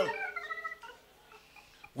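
A man's voice drawn out in a high, gliding, meow-like tone that rises and falls and fades out about a second in, then near quiet.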